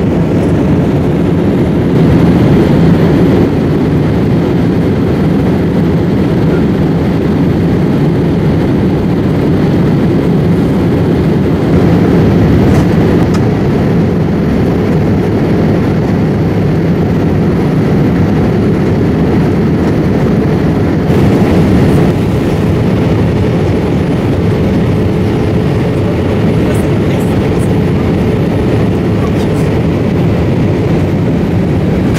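Steady low rumble and rush of air inside a Boeing 787 Dreamliner's cabin at cruise, the engines and airflow giving an even, unbroken noise. A faint steady hum comes in over the last third.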